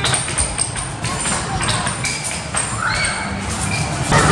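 Arcade racing-game cabinet playing its music and sound effects, with short electronic tones and a rising tone about three seconds in.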